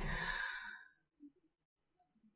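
A woman's soft, breathy exhale, like a sigh, right after she stops speaking. It fades out within the first second, and near silence follows.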